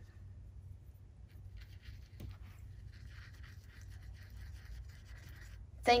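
Faint, scratchy rubbing of a paintbrush's bristles working acrylic paint on a palette. It starts about a second and a half in, with a small tick a couple of seconds in.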